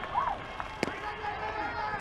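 Ballpark crowd murmur on a TV baseball broadcast, with one sharp pop a little under a second in: a pitch smacking into the catcher's mitt.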